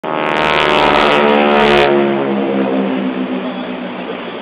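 Aircraft flying past overhead: a loud, rich engine note that falls steadily in pitch as it passes and draws away.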